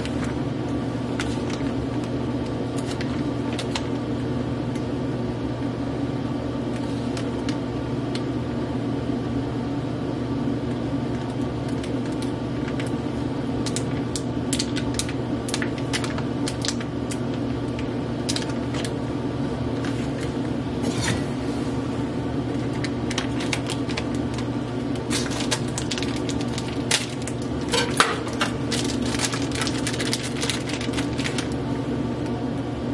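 Plastic sausage packaging crinkling and tearing as it is pulled open by hand, the crackles growing frequent in the second half with a couple of sharper snaps near the end. A steady hum runs underneath.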